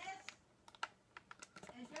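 Faint typing on a computer keyboard: a short, uneven run of about eight quick key clicks.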